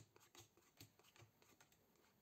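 Near silence, with a faint click at the start and a few fainter ticks after it: playing cards being dealt onto a table.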